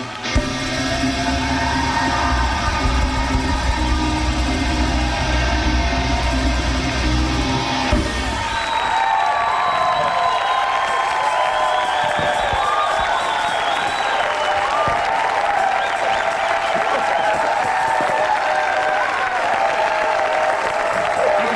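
A live rock band with guitars and keyboards plays with a heavy bass line, then stops about eight seconds in, giving way to a studio audience cheering, whooping and applauding.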